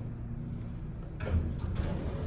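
Elevator running: a steady low rumble, with a dull thump just over a second in.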